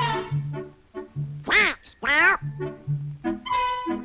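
Orchestral cartoon score with a pulsing bass line and brass. About a second and a half in it is broken by two loud squawks in Donald Duck's quacking voice, each rising and then falling in pitch.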